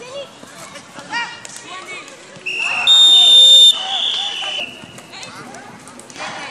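Referee's whistle blown in one long, high, steady blast of about two seconds, starting about two and a half seconds in; it is the loudest sound here. Players' shouts are heard around it.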